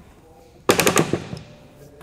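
A Yakima HoldUp hitch bike rack's arm being swung out of the way, giving a quick rattling burst of sharp clicks a little before the middle, about a third of a second long.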